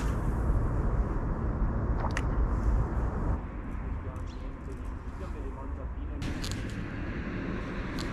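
Steady low rumble of wind buffeting the camera microphone outdoors, with a few short sharp clicks near the start, about two seconds in and around six seconds in.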